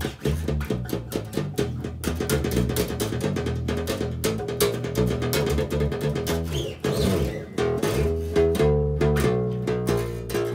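Hollow-body violin-style electric bass played note by note, running up and down the E blues scale in a steady stream of plucked single notes.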